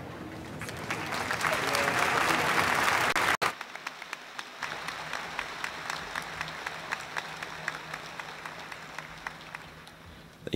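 Audience applauding a choir performance. The applause swells over the first second, cuts off abruptly about a third of the way in, and then thins to scattered clapping that dies away.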